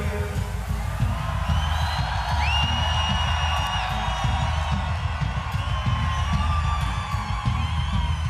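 A nu metal band playing live at a large open-air concert, with heavy, fast-pulsing drums and bass under the guitars and no vocals. About two and a half seconds in, a high note rises and holds for about a second and a half.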